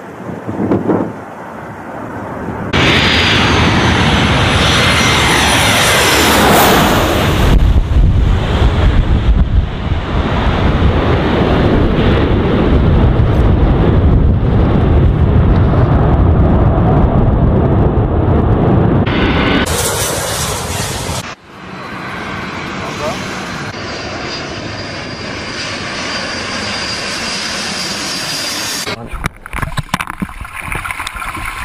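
Jet airliner engines during landings, loud and steady, with a whine falling in pitch a few seconds in. The sound changes abruptly twice in the second half and is quieter afterwards.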